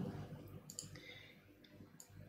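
A few faint, scattered clicks from a computer mouse and keyboard in use.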